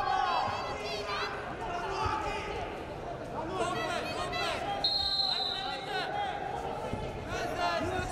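Voices shouting across a wrestling hall, typical of coaches calling to the wrestlers from mat-side, over a steady hum. Dull thuds come from the wrestlers' feet and bodies on the mat, and a short high steady tone sounds about five seconds in.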